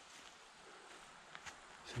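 Quiet outdoor ambience: a faint steady hiss, with a few soft ticks in the second half.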